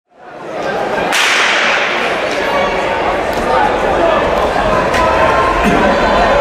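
A starter's pistol fires once about a second in, a sharp crack echoing through a large indoor track hall. A steady hubbub from the crowd follows.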